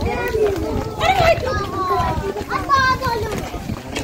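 Children's voices calling and chattering, with high-pitched calls that rise and fall in pitch.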